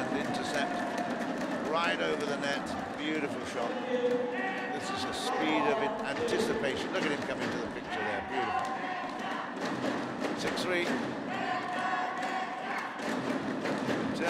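Badminton arena sound during a doubles rally: crowd voices and shouts run throughout, with sharp racket hits on the shuttlecock and thuds from the players' footwork.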